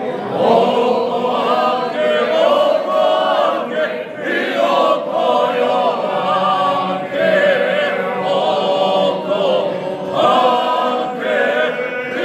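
A small group of men, with one woman, singing a traditional folk song unaccompanied in harmony. Held, wavering notes in phrases, with short breaks for breath about every three seconds.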